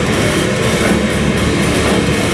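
Heavy metal band playing live: loud, dense distorted electric guitars with bass and drums, running without a break.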